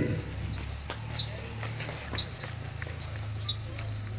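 Outdoor ambience in a lull: a steady low hum with three short, high chirps about a second apart.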